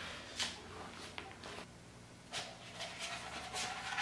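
A sheet of vinyl wrap and its paper backing being handled and unrolled, giving a string of short, soft crinkles and taps.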